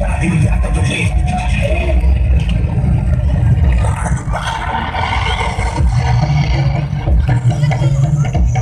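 Loud dance music from a DJ loudspeaker, heavy in the bass and distorted by the recording.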